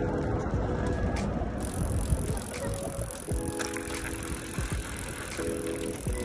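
Wind on the microphone and tyre rumble from a mountain bike rolling down a paved path, with background music playing underneath.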